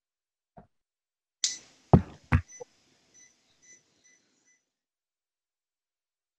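Two sharp knocks, then a short run of faint, evenly spaced electronic beeps, about two a second, that fades out; near silence around them.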